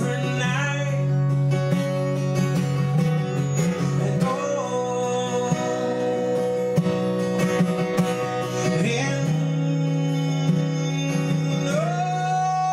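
Acoustic guitar played live with a man singing over it in long, held notes.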